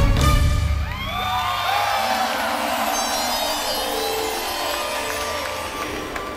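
Live electronic dance music with a heavy bass beat that drops out about a second in, leaving held sustained tones, over a large crowd cheering and whooping.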